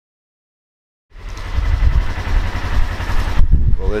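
Wind buffeting the microphone: a loud, gusty low rumble with a hiss over it that stops about three and a half seconds in. The rumble starts after about a second of silence.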